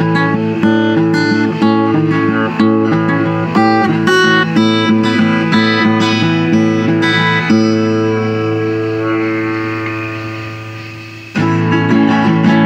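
Acoustic guitar playing chords in a steady rhythm, about two strokes a second. About seven seconds in, one chord is left ringing and slowly fades, and the playing starts again abruptly near the end.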